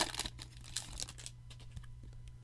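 Foil wrapper of a Topps Chrome baseball card pack being torn open and crinkled by hand, crackling for about the first second and then dying down to a few faint ticks.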